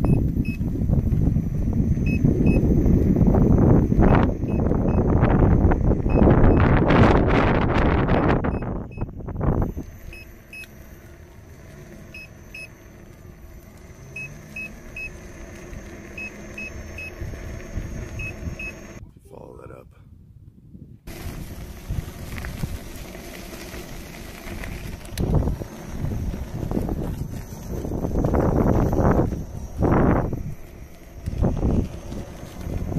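Wind buffeting the microphone of a rider on an electric unicycle. Between the gusts the unicycle's motor gives a steady whine, with short high beeps in small groups. The sound cuts out briefly about two-thirds of the way through.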